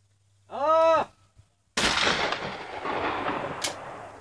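A shooter's short shouted call for the clay, then about a second later a single shotgun shot that rings out and fades over about two seconds.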